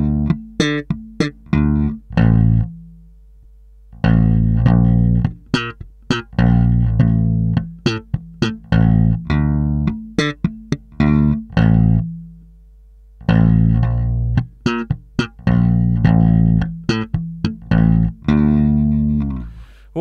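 Electric bass guitar playing a funk-rock riff slowly, solo, in D minor on the notes D, A and B-flat. It is made of short, muted, plucked notes with rests between them. Twice, about two and a half and twelve seconds in, a note is left to ring out and fade.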